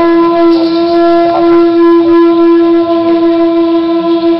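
Conch shell trumpet blown in one long, loud, steady note.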